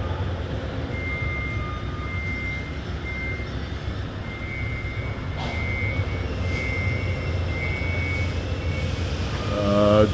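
Steady low machinery hum in a large industrial building, with a reversing alarm beeping faintly on and off from about a second in to near the end.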